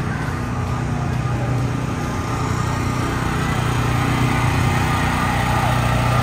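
A vehicle engine running steadily at a slow roll. Its low hum grows gradually louder as it draws closer.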